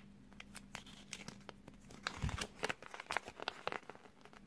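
Small glossy paper leaflet crackling and crinkling as fingers unfold it, in many quick, irregular little snaps, with a soft low thump about halfway through.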